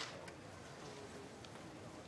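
Faint, quiet background ambience with a couple of soft, brief ticks; the last of a loud sharp sound dies away right at the start.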